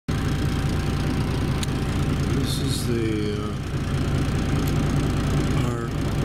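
Dump truck's diesel engine idling steadily, heard from inside the cab.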